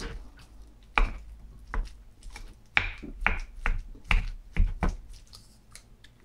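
Wooden spoon knocking and scraping against a metal bowl while mixing rice, a dozen or so irregular sharp clicks and scrapes.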